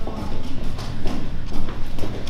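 Quick footsteps on a hard tiled corridor floor, about three to four steps a second.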